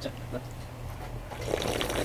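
A person slurping noodle-soup broth straight from a bowl. A noisy sip starts a little past halfway through, over a low steady hum.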